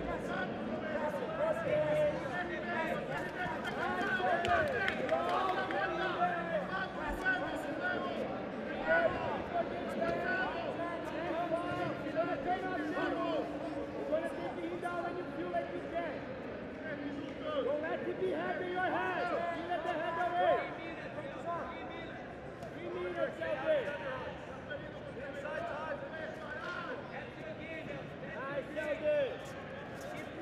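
Many overlapping voices shouting and talking over a crowd's chatter, typical of coaches calling instructions to grapplers from the mat side.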